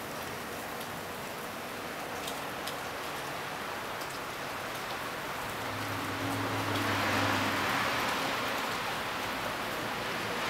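Wet snow mixed with rain falling: a steady hiss with scattered drips ticking. From about six to eight seconds in, the hiss swells louder over a low hum.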